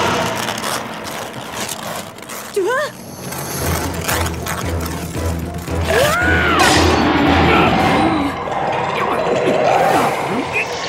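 Cartoon soundtrack: dramatic background music and sound effects, with a pulsing low beat from about three and a half seconds in until about eight seconds. Short swooping pitched sounds, like brief wordless cries, come about two and a half seconds in and again around six to seven seconds.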